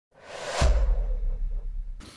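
Logo sting sound effect: a whoosh swells up over about half a second and lands on a deep low boom that rings on and slowly fades.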